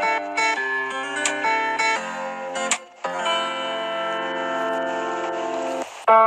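Instrumental background music: a run of short notes, a brief drop about halfway, then one long held chord that cuts off just before the end.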